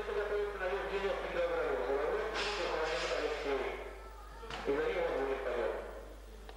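Indistinct male voices talking in a reverberant gym hall.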